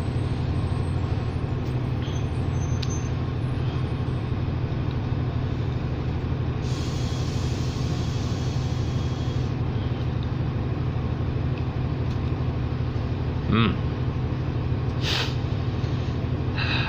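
Diesel transit bus idling steadily, heard from inside the cabin of a New Flyer D40LFR. Partway through, compressed air hisses out of the air system for about three seconds.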